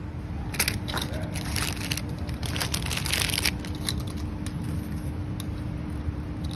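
Crackling, crinkling handling noise from store merchandise being handled with gloved hands. There is a dense run of it for about three seconds, then scattered light clicks, over a steady low background hum.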